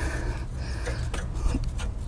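Light metal rubbing and a few faint clicks as a long threaded battery hold-down rod is turned by hand, unscrewing from its welded captive nut, over a steady low hum.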